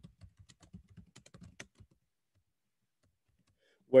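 Typing on a computer keyboard: a quick run of faint key clicks lasting about two seconds.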